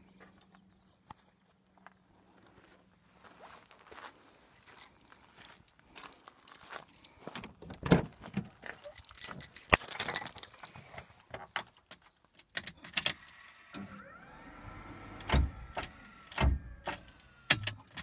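Car keys jangling among scattered clicks and knocks of handling, with a few dull thumps and a faint whine near the end; no engine is running.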